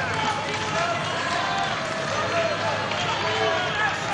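Steady murmur of a crowd of spectators in an arena: many overlapping voices and calls, none standing out.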